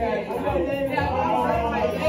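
Indistinct chatter of a group of teenagers talking over one another, with music playing underneath.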